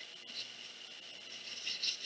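Paintbrush bristles stroking paint onto a paper plate: faint scratchy brushing, one short stroke about half a second in and a few more near the end.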